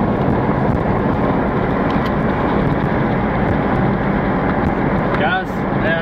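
Steady road and engine noise of a moving car, heard from inside the cabin. A voice comes in near the end.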